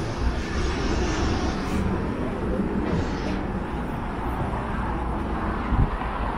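City street ambience: a steady low rumble of vehicle traffic with voices of passers-by mixed in, and a brief low bump near the end.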